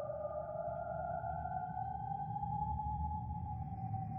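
Eerie horror ambience drone: a sustained, sonar-like tone that slowly rises in pitch over a low rumble.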